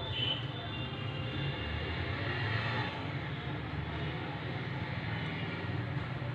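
Steady background traffic noise with a low hum and faint distant voices.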